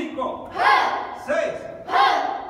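A group of children shouting together in sharp, short bursts, about one every two-thirds of a second, in time with taekwondo punches drilled on count. The shouts ring in a large hard-walled room.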